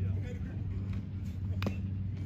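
A single sharp crack of a bat striking a pitched baseball about one and a half seconds in, over faint background voices and a low steady hum.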